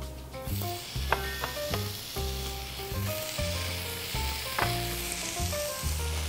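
Cubes of raw beef sizzling as they hit a hot frying pan, starting about half a second in, with soft background music underneath.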